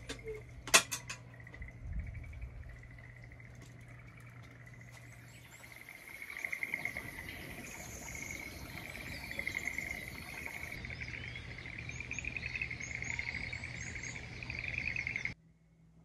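A wood fire in a small chimney stove crackling, with a few sharp pops, the loudest about a second in, over a steady high night chorus. About six seconds in this gives way to a dawn chorus of many birds singing. The birdsong cuts off suddenly shortly before the end.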